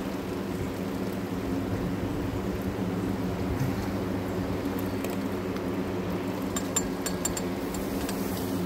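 Large electric box fan running with a steady hum and rush of air. A few light clicks come near the end as glass tubing and plastic hose are handled against the glassware.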